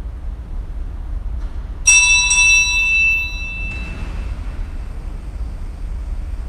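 Sacristy bell rung once as the priest and servers set out, marking the start of Mass: a bright clang that rings on and fades over about a second and a half, over a low steady room hum.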